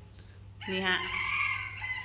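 A rooster crowing once, a single call of about a second that starts around two-thirds of a second in, over a steady low hum.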